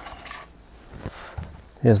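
A few light clicks and knocks of hand work over quiet background, with a sharp click at the start, then a man's voice begins near the end.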